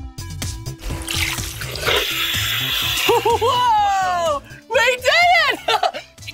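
Upbeat background music, then about two seconds of rushing water noise, followed by excited, sliding vocal whoops.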